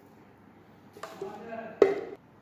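Steel cooking pot handled: a scrape with a ringing metallic tone about a second in, then a sharp clank near the end that rings briefly.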